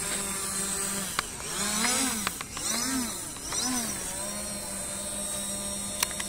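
FIMI X8 SE V2 quadcopter drone hovering with a steady propeller hum; from about one and a half to four seconds in, the motor pitch rises and falls three times in quick succession as the drone manoeuvres.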